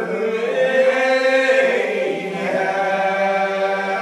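Old Regular Baptist congregation singing a lined-out hymn unaccompanied: many voices drawing out slow, long-held notes that bend gently in pitch.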